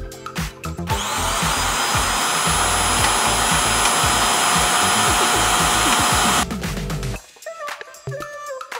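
ECOVACS DEEBOT N8+ auto-empty station's suction motor spinning up about a second in, running loudly and steadily with a high whine as it sucks the dirt out of the docked robot's dustbin into the station's bag, then cutting off about six and a half seconds in. Background music plays throughout.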